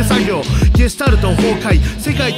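Hip hop backing music: a rapped vocal over a beat with deep bass and kick drums.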